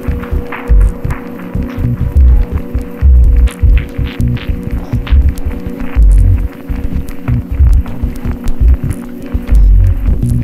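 Glitch-dub ambient electronic music: deep bass pulses about once a second, unevenly spaced, under a steady hum, with scattered clicks and crackles above.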